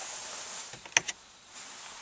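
A single sharp click about a second in, flanked by a couple of lighter ticks, after a faint steady hiss.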